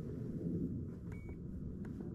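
A single short, high electronic beep about a second in, with faint clicks on either side of it, over a low steady rumble.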